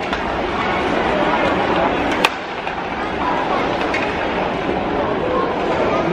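Ice hockey arena ambience: the crowd chattering and skates scraping on the ice, with one sharp crack of the puck about two seconds in.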